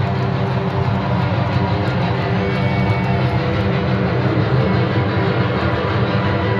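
Live rock band playing through a stadium PA, recorded on a phone from the stands: a loud, steady, bass-heavy wash of band sound with no clear vocal line.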